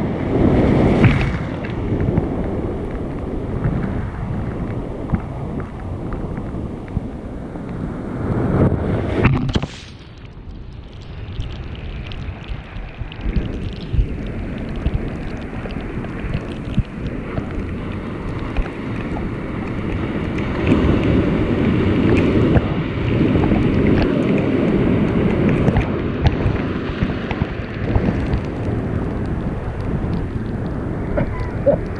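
Ocean surf breaking and washing around, with wind buffeting the microphone. Loud surges come near the start and again at about eight to ten seconds, then the sound drops suddenly and slowly builds back up.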